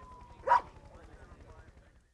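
A single short dog bark about half a second in, over a faint, slowly falling tone.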